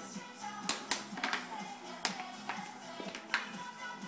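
Background music with a steady beat, with a handful of sharp clicks over it.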